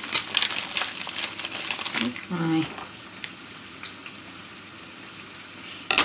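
Plastic film wrappers of surimi sticks crinkling and rustling as they are handled, a dense run of sharp crackles for about two seconds, followed by a faint steady hiss.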